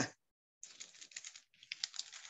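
Faint, crisp rustling and ticking of thin Bible pages being handled and leafed through, in two short spells starting about half a second in.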